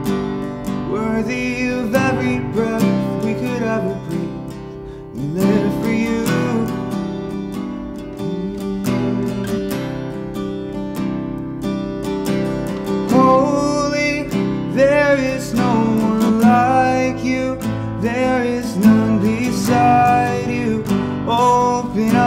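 Acoustic guitar strummed steadily, with a voice singing a slow worship song over it in phrases.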